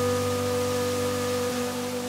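Background music holding one sustained chord steadily, over an even rushing noise like falling water from a large waterfall.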